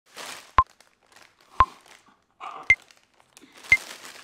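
Crinkling of a Doritos chip bag being handled, broken by four sharp clicks evenly spaced about a second apart.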